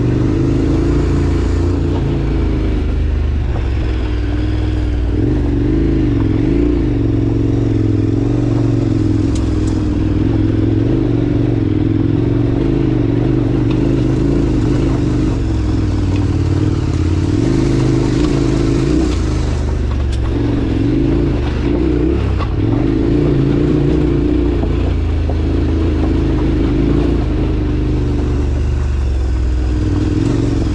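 Off-road motorcycle engine running steadily as it climbs a loose, rocky track, its pitch rising and falling with the throttle, with tyres crunching over loose stone.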